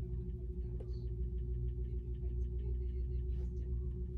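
Faint light ticks and brushing of a nail-polish brush being stroked over a fingernail, over a steady low electrical hum.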